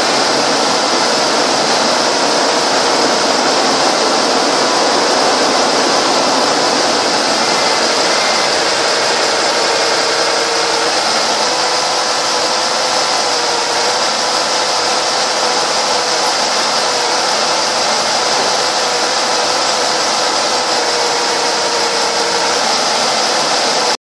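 A 2005 Mazda 6's 3.0-litre V6 engine idling steadily.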